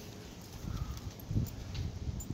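Irregular low thuds of footsteps and a handheld phone being jostled while walking, starting about half a second in.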